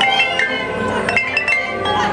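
Marching band playing, with the front ensemble's mallet percussion striking quick ringing notes over sustained chords.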